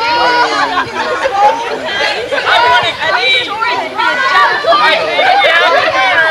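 Several people chatting at once, their voices overlapping in a steady stream of conversation.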